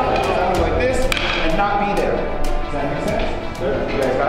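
Background music with a steady beat, with indistinct voices underneath.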